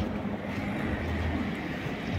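Steady low rumble of a vehicle engine or street traffic running nearby, with no distinct events.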